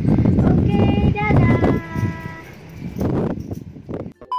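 A woman's voice outdoors, with a drawn-out, high-pitched vocal sound about a second in, over a heavy rumble of wind on the microphone.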